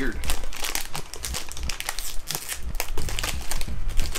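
Plastic snack pouch crinkling in a run of irregular rustles as hands grip and pull at its tear-open top, a hard-to-open bag.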